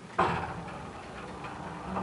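Moving elevator car giving a sudden loud clunk that rings away over about a second, then a smaller knock near the end.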